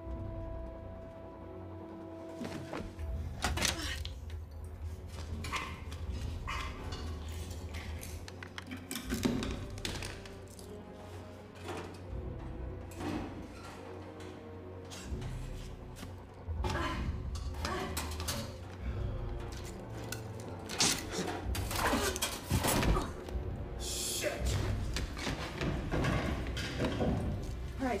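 Tense film score with a low rumble, under a string of knocks, clicks and thuds from handling, loudest a little past two-thirds of the way through.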